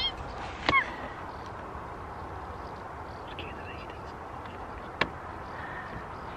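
Steady outdoor hiss with faint bird calls, broken by two sharp clicks, one about a second in and one near the end.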